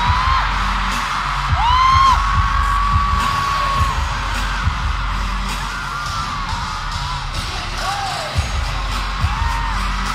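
Live pop concert music heard from the crowd: a loud, pulsing bass beat under a singer's voice. The singer holds one long note from about one and a half to four seconds in.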